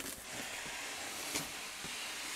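Cardboard shipping box being opened: a steady scraping rustle of cardboard flaps and foam packing rubbing together, with a faint tick about a second and a half in.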